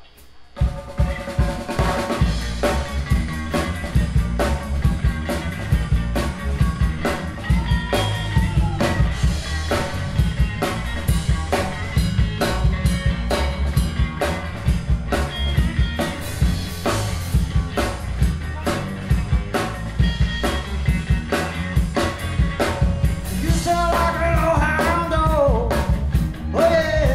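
Live blues band playing an instrumental intro: a Pearl drum kit keeping a steady beat under bass guitar and electric guitar, starting about half a second in. A voice starts singing near the end.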